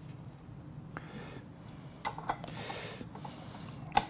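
Quiet handling of a KitchenAid stand mixer: a few small metal clicks as the dough hook is fitted onto the mixer's drive shaft, the sharpest just before the end, with soft hissing in between. The mixer motor is not running.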